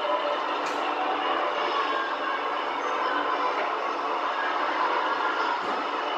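Steady hiss and rumble of busy outdoor ambience picked up by a handheld camcorder microphone, with a brief click under a second in.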